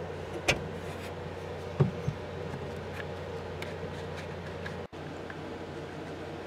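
Steady low electrical-sounding hum, with a sharp click about half a second in and a short knock a little before two seconds in; the sound drops out for an instant just before five seconds.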